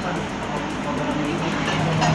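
Steady roadside background noise: a running vehicle engine humming steadily, with indistinct voices in the background.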